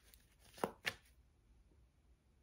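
Tarot cards being shuffled by hand: two sharp slaps of cards on the deck, about a quarter second apart, in the first second.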